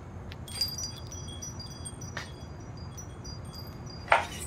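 A knock about half a second in, then wind chimes tinkling: many short, high ringing notes that overlap and keep going, with a brief click midway.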